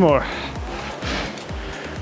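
Background music with a steady beat, under the whoosh of a Concept2 indoor rower's air flywheel, which swells about a second in as a drive stroke spins it up.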